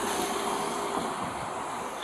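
Steady wind noise on a body-worn camera's microphone, a hiss and rumble with a faint steady hum through the first second.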